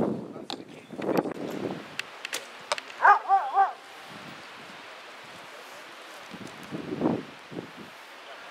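A dog gives one short, wavering whine about three seconds in, preceded by a few sharp clicks and brief voices. After it, a steady outdoor hiss.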